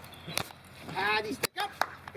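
Sharp clicks, with a brief voice-like call about a second in.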